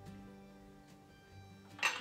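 Quiet background music with held, steady notes.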